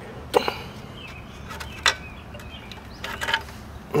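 A few separate short metallic clicks and knocks, about a second and a half apart, as the first engine mounting bolt of a Puch E50 moped engine is worked loose and drawn out by hand.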